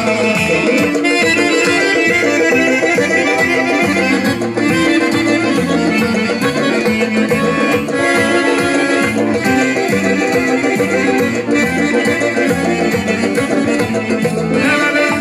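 A live band playing folk dance music with a steady beat, keyboard and drums to the fore.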